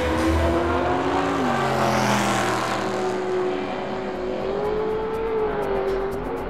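Race car's V8 engine held at high revs in a victory burnout, its pitch rising and falling as the rear tyres spin in clouds of smoke, with tyre noise underneath.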